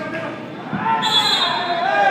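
Voices shouting across an echoing indoor soccer arena, getting louder about a second in, with a thump of the ball on the floor just before.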